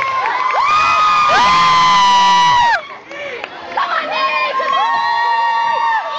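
A crowd of children shouting and cheering together, many high voices at once; the shouting breaks off for about a second just before the middle, then picks up again.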